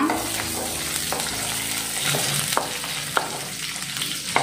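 Garlic cloves, onion and dried red chillies sizzling in hot oil in a metal kadai, stirred with a wooden spatula that knocks against the pan a few times.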